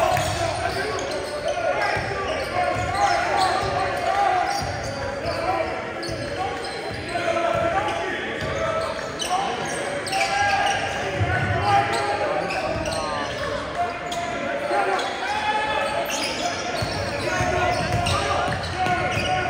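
A basketball being dribbled on a hardwood gym floor during play, repeated thuds under a steady mix of players and spectators calling out and talking.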